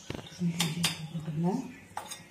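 Steel spoon clinking and scraping against a stainless steel bowl as a mashed potato filling is stirred, with a few sharp clinks. A short, steady hum of a voice sounds in the middle.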